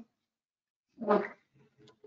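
Near silence, broken about a second in by one short pitched vocal sound lasting about a third of a second.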